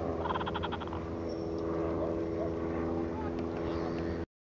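A steady, low motor hum at one unchanging pitch. In the first second there is a short, rapid trill of about a dozen quick pulses.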